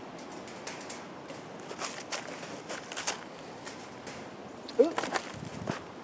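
Hardware cloth wire mesh clinking and rattling lightly in a few scattered clicks as it is pressed down and bent around the armature.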